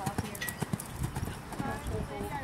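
Hoofbeats of a horse cantering on an arena's sand footing: a run of regular dull thuds.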